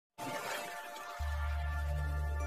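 Intro music sting: a sudden crash-like noise burst over held synth tones, then a deep bass tone kicks in abruptly about a second in and holds.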